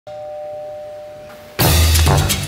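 Doorbell chime: two steady tones sounding together and fading, the higher one stopping a little after a second and the lower soon after. About one and a half seconds in, loud music with drums cuts in.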